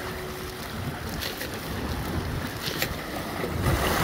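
Small sea waves washing and splashing between boulders at the water's edge, with wind buffeting the microphone; the wash grows a little louder near the end.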